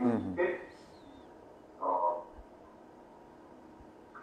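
A man's voice over a Skype call in short utterances with pauses: a sound falling in pitch at the very start, one more short syllable about two seconds in, then a pause.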